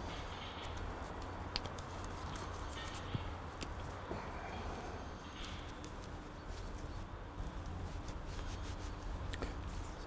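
Faint handling of tarred marline twine and rope being worked around a metal marlinspike: soft rustles and a few light clicks over a steady low hum.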